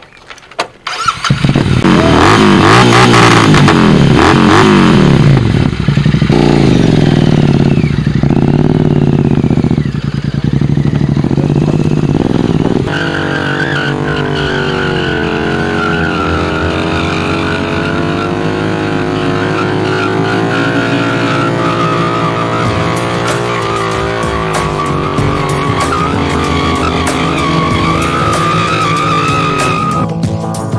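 Twin-cylinder motorcycle started about a second in and revved hard, its pitch sweeping up and down between blips. It is then held at high revs during a stunt, with music mixed in over the second half.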